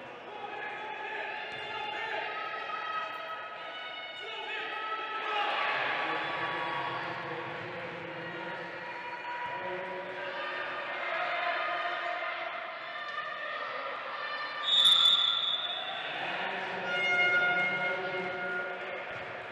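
Wheelchair basketball play on a wooden hall floor: a basketball dribbling, wheelchair tyres squeaking and players calling out. A referee's whistle blows sharply about fifteen seconds in and is the loudest sound, stopping play.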